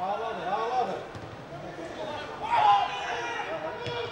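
A man speaking in short phrases, with a louder burst near the middle, over faint outdoor background noise.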